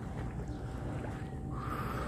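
Sea water lapping and sloshing close to a phone held at the surface by a swimmer, over a steady low rumble.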